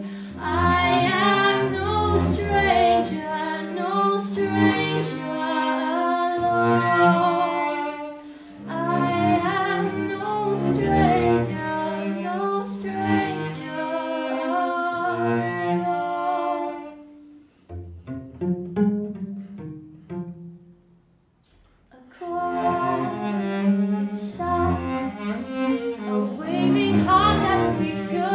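Cello bowed through a slow passage of a song, with a woman singing wordlessly over it. The music thins about seventeen seconds in and almost stops for a second or two before cello and voice come back in.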